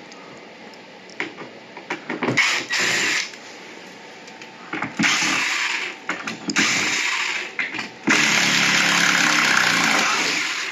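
Cordless drill/driver running in short bursts, about four runs with clicks between them, the last and longest near the end. It is backing out a door's hinge screws.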